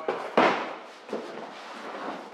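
Cardboard product boxes being handled and unpacked: a sudden thump about half a second in as a boxed part is set down on a metal table, then a few lighter knocks and cardboard rustling from the carton.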